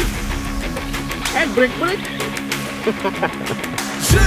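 Background music: an upbeat song with a singing voice over steady held notes.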